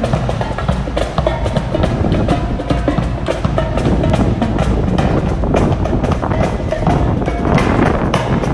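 Music with a prominent drum and percussion beat.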